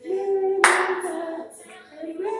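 Voices singing held notes, with one loud handclap a little over half a second in.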